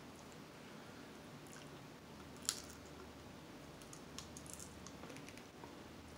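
Fingers picking at boiled shellfish shell, with faint small clicks and one sharp snap of shell about halfway through.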